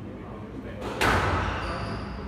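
A squash ball struck on the serve and hitting the front wall about a second in: one sharp, loud smack that rings on in the enclosed court.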